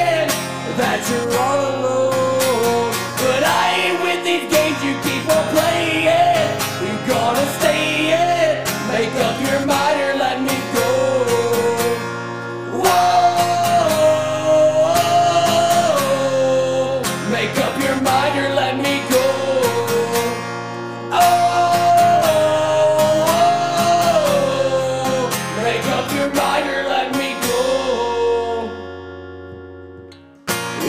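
Strummed acoustic guitar with a man singing, holding long high notes twice in the middle; the music fades down near the end.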